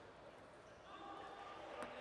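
A table tennis ball ticks once near the end, as a player readies to serve, over faint voices in a large hall.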